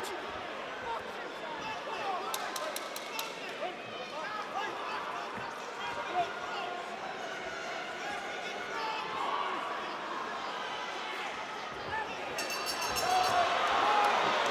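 Crowd murmur and shouted voices around a boxing ring, with a quick run of sharp knocks about two to three seconds in. Near the end, a high-pitched ringing bell sounds the end of the round.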